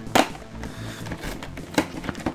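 A cardboard card box with a plastic window being handled and turned over in the hands, with a sharp crackling snap just after the start, soft rustling, and another short click near the end.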